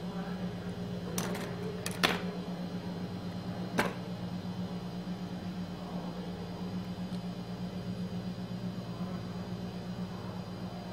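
A steady low electrical hum runs throughout. Over it come a few light, sharp clicks in the first four seconds, the loudest about two seconds in, from the needle, pins and fabric being handled during hand sewing.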